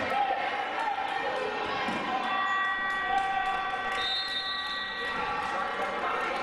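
Basketball game in a gymnasium hall: crowd voices and chatter with the ball bouncing and short squeaks and knocks from play on the hardwood court. A steady tone is held for about three seconds starting about two seconds in.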